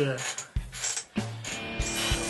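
A squeaky chair creaking as the seated person shifts his weight, over background guitar music.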